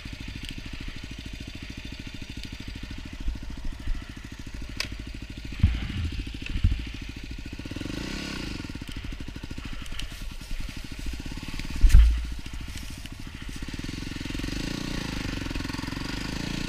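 Yamaha dirt bike engine running, its revs rising about halfway through and again near the end. A few heavy thumps break in, the loudest about three-quarters of the way through.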